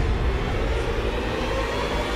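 Loud, steady low rumble of heavy engines, a film-trailer sound effect.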